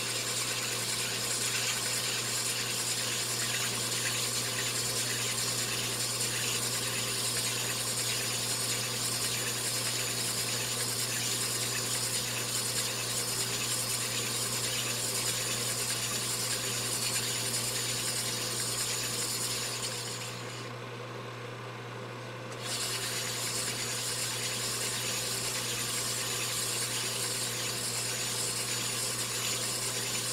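Sunnen cylinder hone honing the bore of a two-stroke motorcycle cylinder: a steady low hum under the hiss and rasp of the honing stones on the cylinder wall as the cylinder is stroked back and forth on the oil-flooded mandrel. About twenty seconds in, the rasp drops away for about two seconds, leaving the hum, then resumes.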